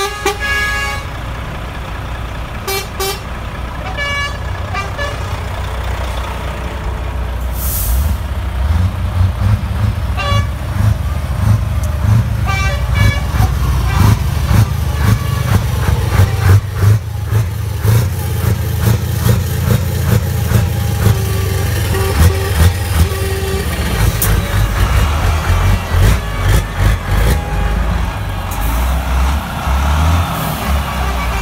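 Heavy truck diesel engines running close by. A deep rumble grows louder from about a quarter of the way in and rises and falls unevenly as the trucks rev and move off. A few short horn toots sound about two-thirds of the way through.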